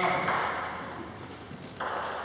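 Table tennis ball clicks, one sharp hit at the start and another near the end, each trailing off in the echo of a large hall.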